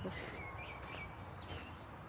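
A few faint, short bird chirps over a low steady background rumble.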